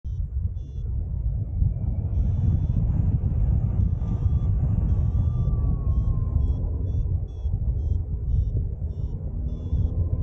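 Airflow rumbling across the harness camera's microphone during a paraglider flight. Short, high electronic beeps, typical of a flight variometer, repeat through it, run almost together about two seconds in, then come roughly twice a second from about six seconds on.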